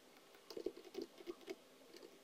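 Faint computer-keyboard typing: a quick run of about half a dozen keystrokes starting about half a second in.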